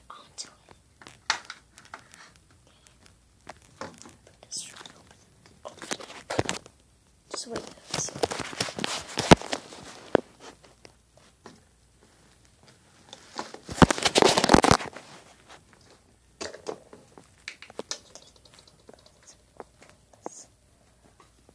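Handling noise: crinkling and rustling with scattered small plastic clicks and knocks as a plastic toy gumball machine is opened and handled, loudest in two stretches of a second or two each, near the middle and about two-thirds through.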